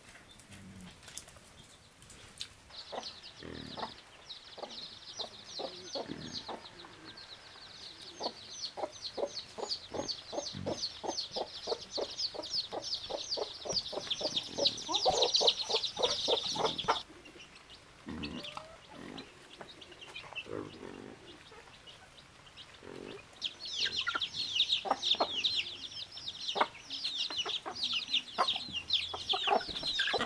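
Chickens clucking, with two long runs of rapid, high-pitched peeping and a quieter gap between them.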